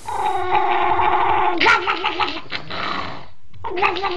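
A dog making long, drawn-out growling vocal calls. One held call lasts about three seconds and wavers in pitch partway through. After a short break, another starts near the end.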